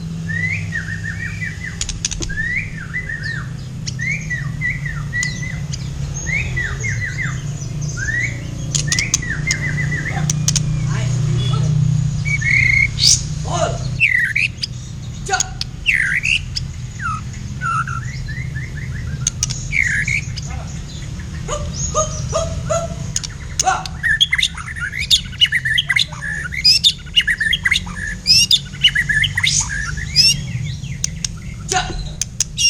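Black-tailed white-rumped shama (murai batu) singing in its cage: runs of quick, repeated falling chirps and whistled phrases, over a steady low hum.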